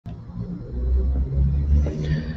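A deep, low rumble that swells up under a second in and stays loud.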